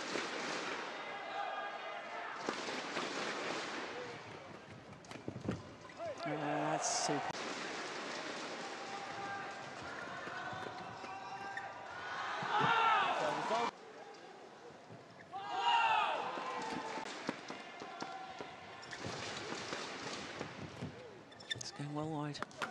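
Badminton doubles rallies in an arena: sharp racket hits on the shuttlecock, with the crowd shouting and cheering in loud swells after points, the loudest about halfway through and again a few seconds later.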